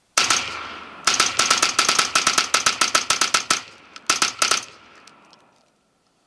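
.223 semi-automatic rifle with a binary trigger, firing on each pull and each release of the trigger. A couple of shots come first, then a fast even string for about two and a half seconds, a short pause, and four more shots, with the echo dying away afterwards.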